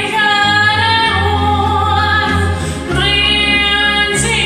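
A woman singing a German song over a karaoke backing track with a steady bass line, holding long notes, with a new phrase starting about three seconds in.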